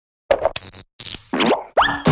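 Cartoon title-card sound effects: a few short pops and hissy bursts, then two quick rising sweeps near the end.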